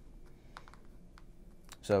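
Quiet room tone with a few faint, light clicks, then a man's voice starting near the end.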